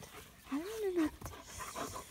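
A German shepherd panting close to the microphone, a quick run of breathy huffs in the second half, with a woman's short 'hein' about half a second in.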